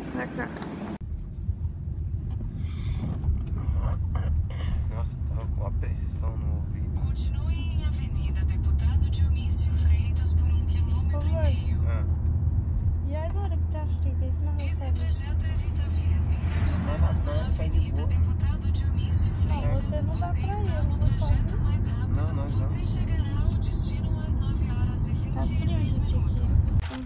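Car interior noise from the back seat: a steady low rumble of the engine and road that starts about a second in, with quiet voices faintly over it.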